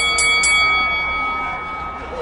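Boxing ring bell struck three times in quick succession, ringing on and fading over a second or two: the signal that the round is over.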